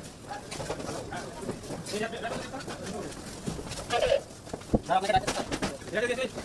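Indistinct voices talking, with one sharp knock a little before the end.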